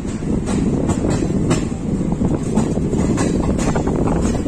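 Passenger train running, heard from the side of a moving coach: a steady rumble of wheels on track, with irregular sharp clicks as the wheels cross rail joints.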